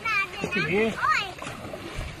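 Paddles of a long-boat crew dipping and splashing in the river in stroke, under loud calling voices.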